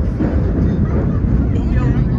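A 1932 R1 subway car running through a tunnel: the steady low rumble of its traction motors and wheels on the rails, with passengers' voices faint in the background.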